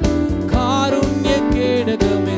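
A male singer singing a Christian worship song into a microphone with vibrato, over a band accompaniment of sustained keyboard-like chords and a steady beat about twice a second.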